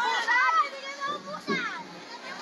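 Children's high-pitched voices, chattering and calling out, with a voice sliding down in pitch about one and a half seconds in.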